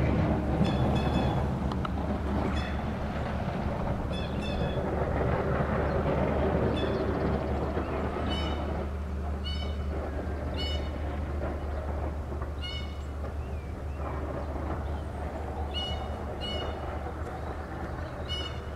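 A plow truck's engine and tyre rumble, steady and slowly fading as it drives away. Over it a bird gives short, high calls again and again, roughly once a second, some in quick pairs.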